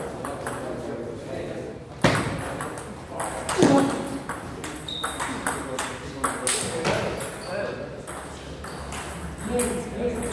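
Table tennis rally: the ball clicks sharply and repeatedly as it is struck by the rackets and bounces on the table. There is a louder knock about two seconds in and another a little after three and a half seconds.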